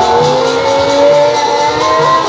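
Jasgeet devotional folk music: a lead melody with sliding, gliding pitch over a steady drum beat of about two strokes a second.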